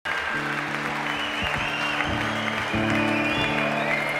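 Live band playing the instrumental opening of a song, sustained chords changing about every half second to second, with the audience applauding over the music.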